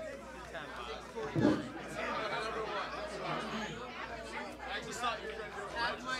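Indistinct chatter of several people talking at once, fairly quiet, with a brief low thump about a second and a half in.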